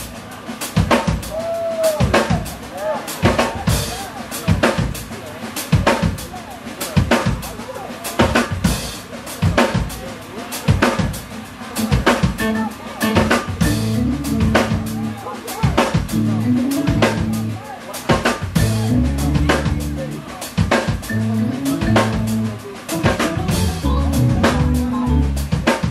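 Live band with a drum kit playing a busy groove, full of snare and bass-drum hits. An electric bass line comes in about halfway through.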